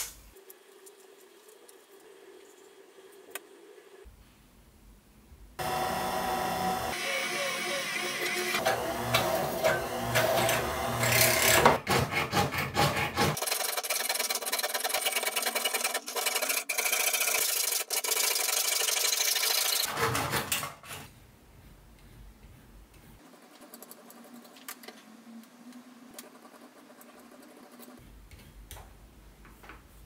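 Jeweler's saw cutting thin sheet metal in rapid back-and-forth strokes, starting about five seconds in and running for about fifteen seconds. Quieter handling sounds come before and after it.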